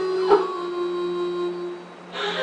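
A woman crying: a sob about a third of a second in, then one long, steady wailing cry that stops shortly before the end, over a low steady background drone.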